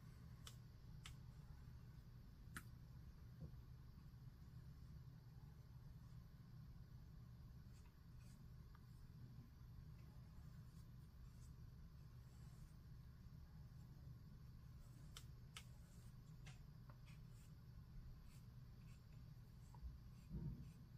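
Near silence: a steady low room hum, with faint scattered ticks and light scratches from a paintbrush working over watercolour paper, a few clustered together about two-thirds of the way through.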